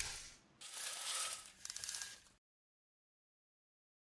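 Two brief, quiet swishing sound effects from an animated logo sting, the second shorter, ending in dead digital silence about halfway through.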